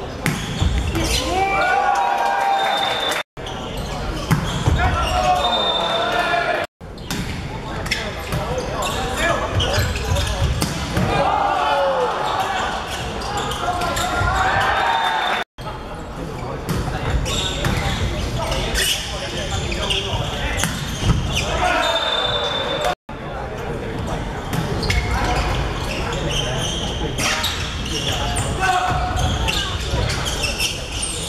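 Indoor volleyball rallies in a reverberant sports hall: players and spectators shouting and cheering, the ball thudding off hands and bouncing on the wooden floor, with a brief high referee's whistle several times. The sound breaks off sharply at a few edit cuts.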